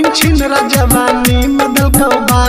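Instrumental stretch of a Magahi/Bhojpuri pop song: a steady beat of deep drum hits that drop in pitch, about two a second, under a held melody line.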